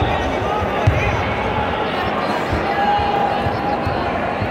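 Echoing sports-hall crowd noise: many voices talking and calling out at once, with several dull low thumps, the loudest about a second in.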